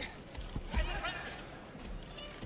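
Judo players' feet stamping and shuffling on the tatami mat during grip fighting, with a heavy thud just under a second in. A short, wavering high-pitched shout sounds around the same moment over the arena background.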